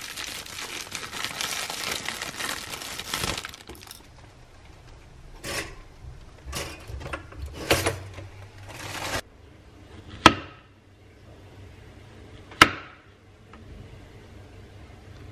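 Plastic bread bag crinkling as it is opened and slices are taken out. A few brief rustles and knocks follow, then two sharp clicks with a short ringing tail, about two seconds apart.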